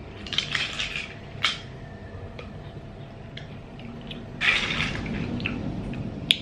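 A metal spoon stirring and scooping through ice and sugar-crushed marian plum in a plastic cup. Short scrapes come first, then a sharp click about a second and a half in, a few faint ticks, and a louder scraping stretch at about four and a half seconds.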